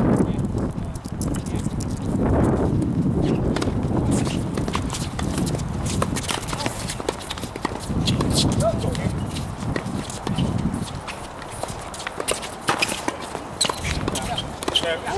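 Tennis balls bouncing and shoes on a hard court, scattered sharp knocks throughout, with indistinct voices and gusts of wind rumbling on the microphone now and then.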